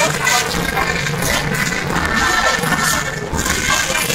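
Provençal folk music with high, steady piping tones, while men carrying tall tambourin drums move through a large chattering crowd.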